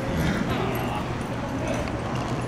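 Indistinct voice and animal sounds over a steady low hum, as horses and cattle move on soft arena dirt during cattle sorting.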